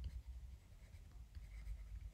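Faint scratching and light tapping of a stylus writing on a tablet screen, over a low steady hum.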